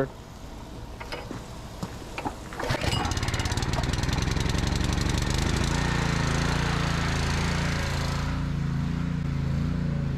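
Gas pressure washer's small engine being started: a few short clicks, then it catches about three seconds in and settles into a steady run.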